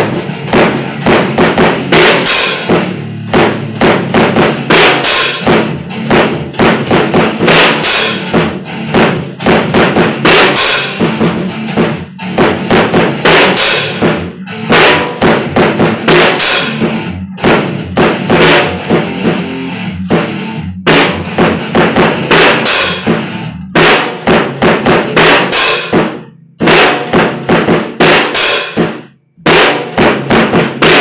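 A drum kit played in a loose free jam: fast, dense hits on the bass drum, snare and cymbals, with a couple of brief breaks near the end.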